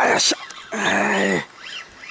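A man's drawn-out wordless exclamation, held for under a second and falling in pitch at its end, as he fights a hooked black bass on a spinning rod. It opens with a short, sharp burst of noise.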